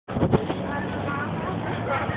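Steady low hum of a vehicle engine, with a few knocks from the phone being handled at the start and faint voices behind it.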